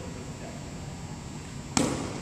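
One sharp bounce of a basketball on a hardwood gym floor near the end, ringing on in the hall's echo, over a low steady room hum.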